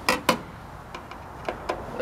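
Hand screwdriver clicking against a microwave oven's sheet-metal casing as a screw is worked loose: two sharp clicks right at the start, then a few fainter ticks.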